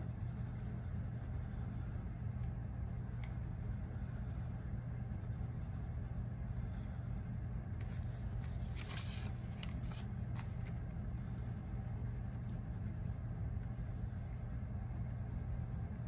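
Crayon scratching on a paper savings tracker as a box is coloured in, faint against a steady low hum, with a few light taps or scrapes around the middle.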